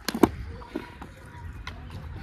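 Skateboard on concrete: two sharp clacks near the start as the board is set down and stepped on, then a few lighter knocks of the deck and wheels as the rider pushes off.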